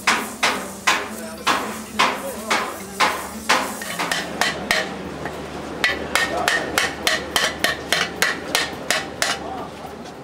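Hammer blows on copper: regular strikes about two a second, then a quicker run with a metallic ringing note from about six seconds in.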